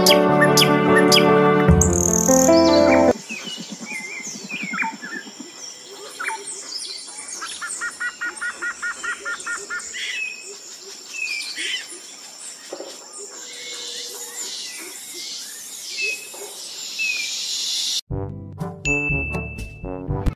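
Birds chirping and calling, with short sweeping notes and a fast run of repeated chirps about midway. Music plays for the first three seconds and comes back near the end.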